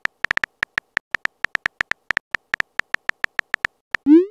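Keyboard typing clicks of a texting-story app: short, sharp ticks at about seven a second, one per letter as a message is typed, stopping just before the end.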